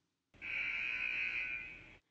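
A 'wrong answer' buzzer sound effect: a steady, harsh buzz that starts a moment in and fades out toward the end, marking the example as incorrect.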